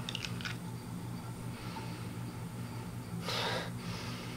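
A person sniffing perfume on her wrist: one audible inhale through the nose, about half a second long, roughly three seconds in, over a faint steady low hum.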